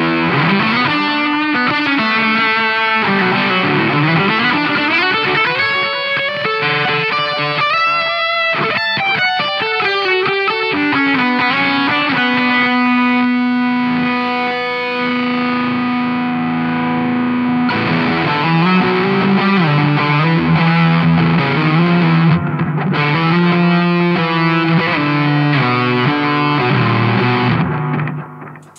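Electric guitar played through a Doomsday Effects Cosmic Critter fuzz pedal: thick, fuzzy chords and riffs with sliding notes early on and a long sustained note near the middle.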